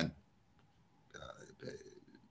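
A man's speech breaking off into a pause, then two faint, hesitant syllables ("you", "uh") as he searches for his next words.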